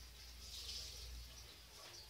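Faint room tone: a steady low hum under a soft hiss that swells slightly about half a second in, with no distinct event.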